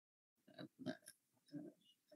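Near silence, broken by three faint, short vocal sounds from a man pausing in his talk, transmitted over a video call.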